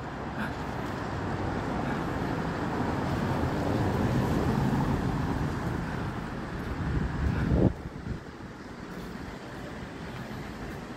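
Road traffic: a motor vehicle passing, its noise building to a peak about halfway through and then cutting off suddenly about three-quarters of the way in, leaving a lower steady background.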